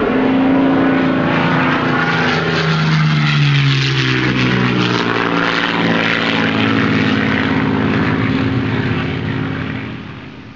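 Propeller aircraft engine running steadily, its note sliding down in pitch about three seconds in, as in a flypast, and easing off slightly near the end.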